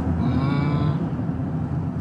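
Steady low road and engine rumble inside a moving car's cabin, with a brief faint hummed voice sound in the first second.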